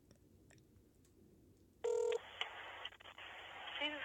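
Outgoing phone call heard through a smartphone's speakerphone: mostly near silence, then about halfway through a brief telephone ringing tone that cuts off short as the line opens into a steady, thin phone-line hiss with faint clicks.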